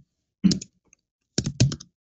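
Typing on a computer keyboard: two short bursts of keystrokes, about half a second in and again about a second and a half in.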